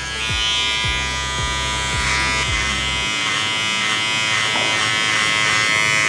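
Electric hair clippers running with a steady buzz, cutting the hair around the sideburn and above the ear.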